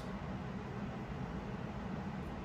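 Steady low background hum of room noise, with no distinct event.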